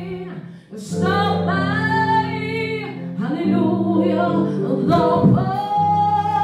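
A woman sings a gospel song solo through a microphone over a sustained musical accompaniment, holding long notes with vibrato. She breaks off briefly about half a second in, then carries on.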